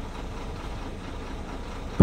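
Bus engine running steadily with road noise, heard from inside the bus's cabin.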